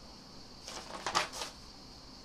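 Sheets of paper on a music stand rustling as they are handled and turned: a few short crackles about a second in, the loudest near the middle.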